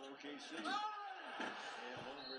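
Faint basketball broadcast commentary: a man's voice talking at low level under the game footage.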